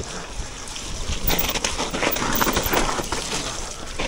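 Mountain bike riding down a wet, muddy trail: tyres running through mud and water, with frequent rattles and knocks from the bike over rough ground.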